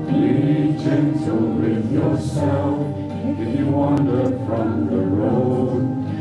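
A small group of men and women singing a song together into microphones over a steady instrumental accompaniment, the voices coming in at the start.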